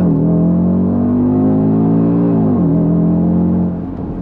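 2020 Audi RS Q3's turbocharged 2.5-litre five-cylinder engine accelerating hard at full throttle, its pitch climbing through each gear with a quick drop at an upshift right at the start and another about two and a half seconds in. The note falls away near the end as the throttle is lifted.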